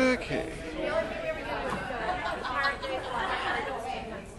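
Chatter of several people talking in a large hall, their voices overlapping, with one voice louder right at the start.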